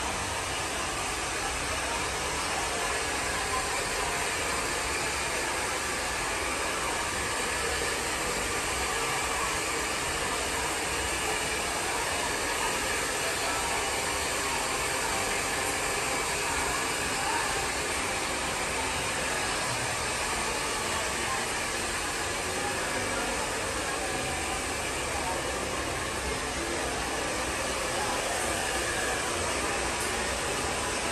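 Electric beard trimmer running steadily as it is worked through a beard, under a constant airy hiss.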